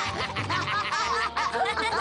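Cartoon child characters snickering and laughing in mocking amusement, over light background music.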